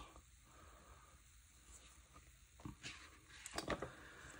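Mostly near silence, then a few faint paper rustles and light taps in the last second or so as a page of a sticker book is lifted.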